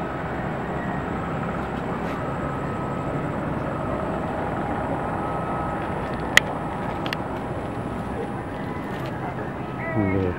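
Steady outdoor background noise with faint distant voices, and a single sharp click about six seconds in.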